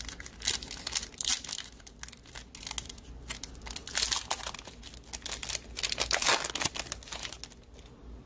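Plastic wrapper of a trading-card pack being torn open and crumpled by hand: irregular rustling and tearing, loudest about four and six seconds in.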